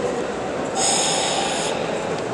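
A karate competitor's forceful hissing exhale during a kata, lasting about a second, over the steady murmur of a sports-hall crowd.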